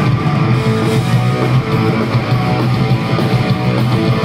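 Punk rock band playing live: electric guitars and rhythm section in a loud, steady instrumental stretch between sung lines.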